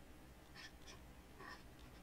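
Near silence: room tone with a low hum and a few faint, short ticks.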